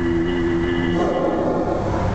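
Mark Twain riverboat's steam whistle blowing a steady chord that cuts off about a second in, leaving a low rumbling noise.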